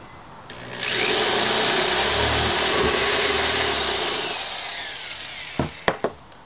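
Corded electric drill with a 3/8-inch bit boring through the side of a tin can: the motor's steady whine and the bit grinding into the metal start about a second in, run for about three seconds, then fade out. Two sharp knocks follow near the end.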